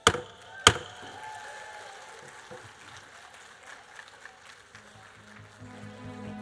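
Two sharp wooden raps of a gavel on the lectern, about half a second apart, then faint room noise; music comes in softly near the end.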